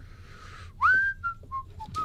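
A person whistling: a faint airy breath, then one loud upward-swooping note followed by a few short, lower notes.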